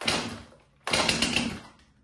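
Two pulls on a Stihl chainsaw's recoil starter, each a rasping burst of about two-thirds of a second, the second starting just under a second after the first. The engine cranks without catching; the owner puts this down to the saw having too little gasoline in it.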